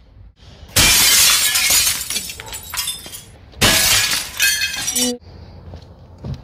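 Glass shattering twice, about a second in and again near four seconds, each crash lasting over a second: a car's taillights being smashed.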